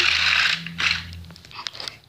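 Rustling and scraping of a homemade cardboard-and-tape toy engine being pushed across a carpet. The hiss fades out about half a second in, followed by a few light clicks and knocks.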